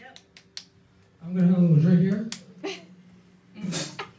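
Several small sharp clicks and taps, with a short burst of indistinct voice in the middle and a brief breathy burst near the end.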